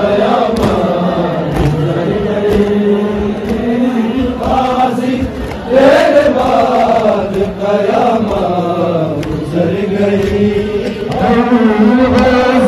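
Large crowd of men chanting a Shia mourning noha in unison, the melody rising and falling in long sung phrases. Faint chest-beating (matam) strikes keep time about once a second.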